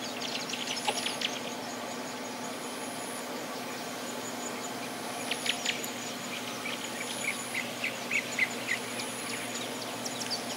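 Garden ambience: an insect's high, thin trill pulsing about every two seconds, with birds giving bursts of short chirps about a second in and again through the second half, over a steady low hum.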